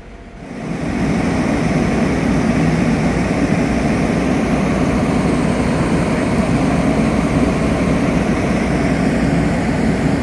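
Loud, steady rumble of a heavy engine running, coming in sharply within the first second and then holding level.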